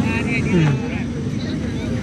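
A brief snatch of a man's voice in the first second, over a steady low outdoor rumble.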